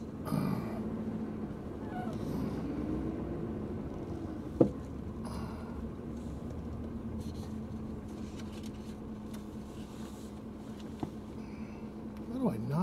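Inside a car's cabin: the steady hum of the car running as it creeps forward, with a faint whine that rises and falls a few seconds in. A single sharp click comes near the middle.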